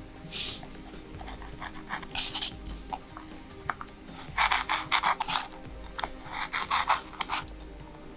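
Hand carving gouge cutting into a woodcut block: short scraping, rasping strokes as chips are lifted, coming in bursts with a dense run about four to five seconds in. Faint background music runs underneath.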